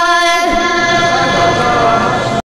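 A man's voice singing a Pashto naat, holding long drawn-out notes, with a change of pitch about half a second in.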